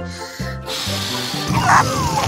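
Cartoon sound effect of a balloon letting its air go: a rushing hiss, then a falling whistle as the released balloon flies off, over children's background music.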